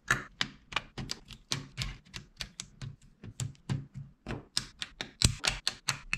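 Plastic LEGO Technic beams and pins clicking and snapping together as they are assembled by hand: a rapid, irregular run of sharp clicks.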